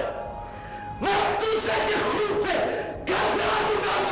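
Dramatic background score with a loud wordless chant of voices. It comes in suddenly about a second in and again just after three seconds.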